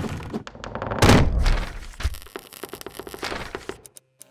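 Sound effects of wooden boards and panels knocking into place: a heavy thud about a second in, followed by a run of quick wooden clacks and rattles.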